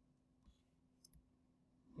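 Near silence with a few faint clicks of a computer mouse and keyboard being worked: one about half a second in, then two close together around a second in.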